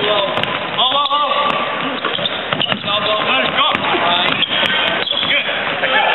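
A basketball bouncing on a hardwood court during play, with indistinct voices calling out.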